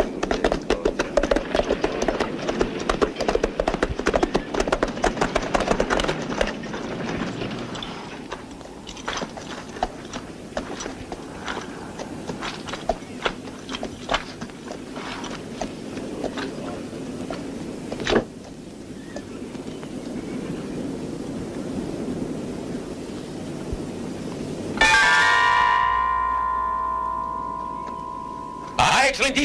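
Horses' hooves and a horse-drawn carriage moving with a funeral procession, with scattered knocks and clatter and a sharp click a little past halfway. About three seconds before the end, a loud ringing tone is struck suddenly and fades away.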